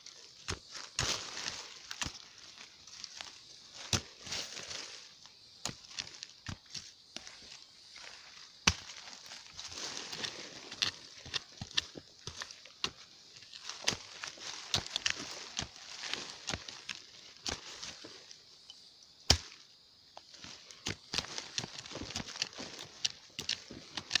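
Digging by hand, without a hoe, in pebbly laterite soil around a wild yam tuber: irregular scrapes, scratches and sharp knocks throughout. The soil is full of tree roots, which makes it hard to dig.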